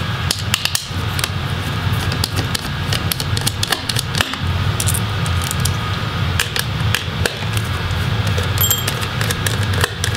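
Small Phillips screwdriver backing out the battery screws of a laptop: a scattered run of light clicks and ticks from the bit, screws and plastic chassis, over a steady low hum.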